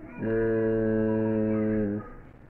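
A man humming one steady, flat note with his mouth closed, held for nearly two seconds after a short pause, then stopping.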